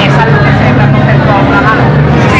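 Indistinct voices of many people talking at once, over a steady low hum.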